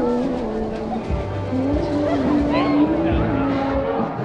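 A band playing a melody of held notes that step up and down, with a few low drum thumps, over a murmur of crowd voices.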